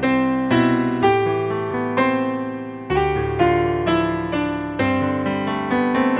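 Upright piano playing an instrumental passage of chords and melody, a new chord struck every half second to a second, each ringing and fading before the next.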